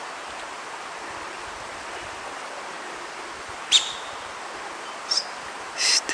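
Outdoor ambience: a steady rushing noise, like a stream or wind in trees, with three short, high bird calls, the first a quick downward chirp a little past halfway and the others near the end.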